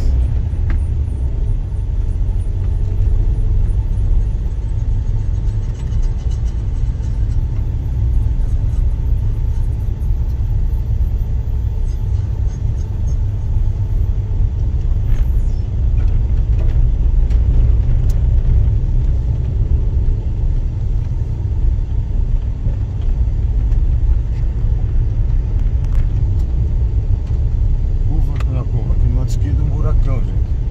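A car driving on an unpaved dirt road: a steady low rumble of engine and tyres on the dirt.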